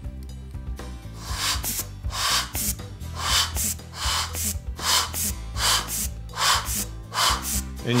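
Short puffs of air from a hand-squeezed NRD Firefly anti-static blower, each a brief hiss, coming about one or two a second over steady background music.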